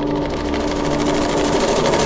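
A fast, evenly pulsing mechanical buzz that swells louder, over a low held music tone that fades out partway through.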